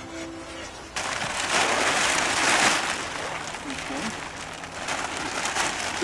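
Background music until about a second in, then loud rustling of a large sheet of Fastfoot fabric footing form being handled and pulled over the wooden forms, loudest just after the music ends.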